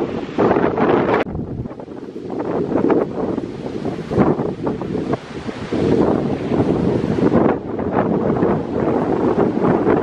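Wind buffeting the camera microphone in uneven gusts, over the wash of surf breaking on a sandy beach.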